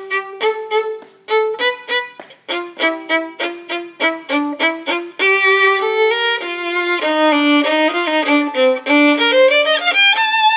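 Solo violin, bowed, playing an orchestra part: short separate notes at about three or four a second for the first five seconds, then louder, longer connected notes, with a line climbing in pitch near the end.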